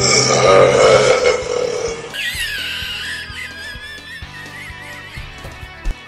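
Background music; over the first two seconds a man lets out a loud, drawn-out vocal outburst, followed by a brief warbling high tone, and the music then carries on more quietly with a regular beat.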